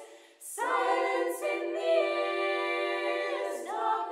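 Small mixed a cappella choir singing sustained close harmony without instruments. The voices pause briefly, enter together about half a second in on a held chord, and move to a new chord shortly before the end.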